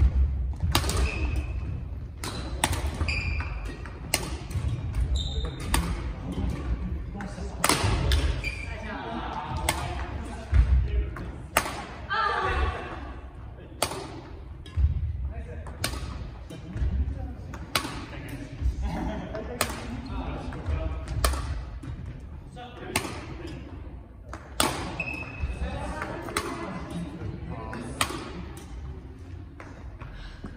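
Badminton rackets striking shuttlecocks in quick succession, about one sharp hit a second, in a multi-shuttle feeding drill. Players' footfalls thud on the wooden gym floor, and the sound echoes in the large hall.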